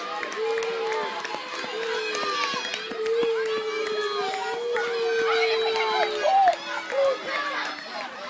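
Several spectators' voices overlapping, calling out and shouting encouragement to runners, with some drawn-out shouts.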